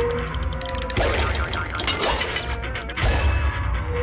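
Short TV bumper jingle: music mixed with mechanical sound effects, with a fast run of clicks in the first second and sudden crashing hits about one and three seconds in.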